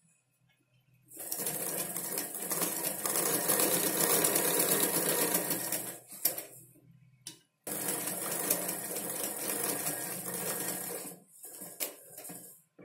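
Domestic straight-stitch sewing machine stitching through fabric in two runs: it starts about a second in, runs for about five seconds, stops briefly, then runs again for about three and a half seconds before stopping near the end with a few clicks.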